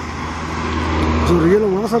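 A road vehicle approaching, its engine rumble and tyre noise growing steadily louder, with a man's voice starting about two-thirds of the way through.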